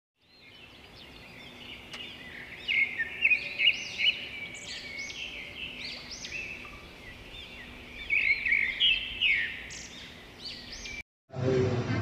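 Birds chirping and twittering, many short overlapping calls, cutting off abruptly about a second before the end, where a duller room noise takes over.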